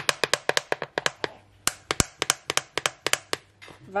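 A plastic curry powder shaker being shaken over a saucepan: a fast, uneven run of sharp clicks and taps, about six to eight a second, pausing briefly twice.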